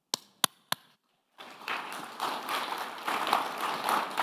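Three sharp taps in quick succession, then an audience applauding from about a second and a half in, continuing steadily.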